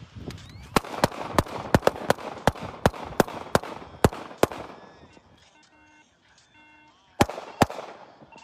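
A rapid string of about a dozen handgun shots, roughly three a second, then two more shots close together near the end, picked up by a phone's microphone.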